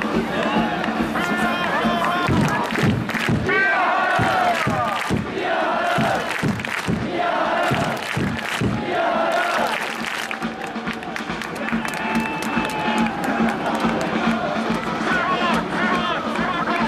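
Football crowd in the stands chanting and shouting, with a run of sharp beats through the middle few seconds.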